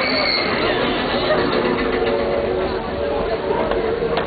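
Riders talking and chattering over the running noise of a roller-coaster mine train rolling out of its station, with steady held tones underneath from about a second and a half in.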